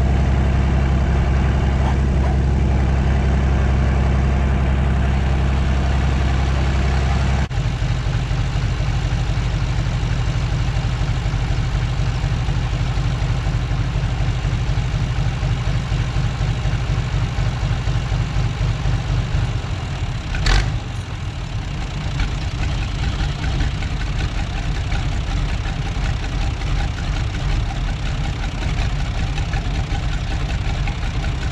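A 40-year-old John Deere tractor's diesel engine running steadily at speed while turning a PTO dynamometer, then dropping abruptly to a lower, chugging idle about seven seconds in. A single sharp knock about two-thirds of the way through.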